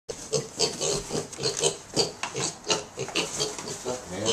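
Young pet pigs grunting in a quick series of short grunts, about three or four a second.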